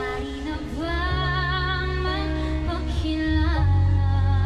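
A woman singing lead with a live pop band, holding long notes with vibrato over bass guitar, electric guitar and keyboard.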